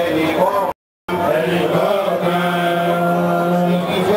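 A man chanting melodically into a microphone, his voice bending through phrases and then holding one long note through the second half. The sound cuts out completely for about a third of a second just under a second in.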